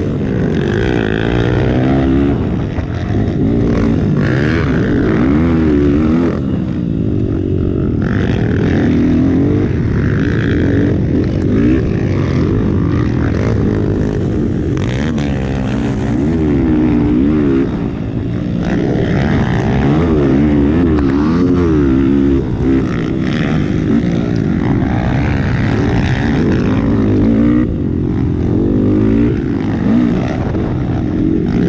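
Motocross bike engine heard from on board while racing: the revs climb and drop again and again, every second or two, as the rider works the throttle and gears.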